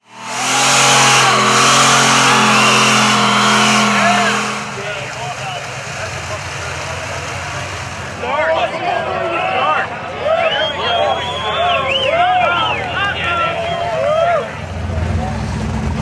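Single-turbo Pontiac Trans Am held at high revs in a burnout, its engine tone steady over the hiss of spinning, smoking tyres for about four and a half seconds. After that the level drops, and many short rising-and-falling shouts and cheers from onlookers come in over it. A low steady engine drone starts near the end.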